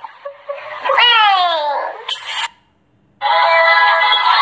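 A high voiced cry sliding down in pitch about a second in, then a short burst of hiss and a moment of silence. From about three seconds in, music with singing.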